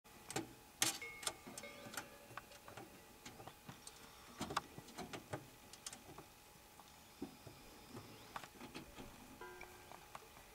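Irregular light clicks and knocks of hands working at a rally buggy's bodywork, a few sharp ones in the first half.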